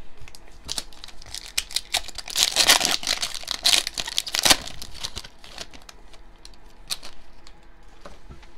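The plastic-foil wrapper of a Mosaic basketball card pack being torn open and crinkled. It is a dense crackling that is loudest in the middle and thins to a few scattered crinkles near the end.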